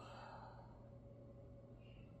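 Near silence: room tone with a faint steady low hum, as a woman's breathy exhale trails off in the first half second.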